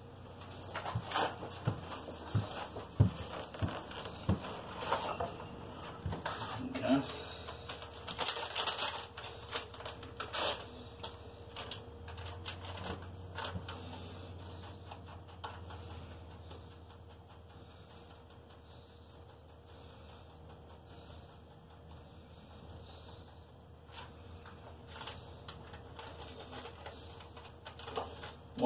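Kitchen handling sounds from food preparation at a counter: a run of irregular clicks, taps and rustling for the first ten seconds or so, then fewer, scattered ticks over a faint steady low hum.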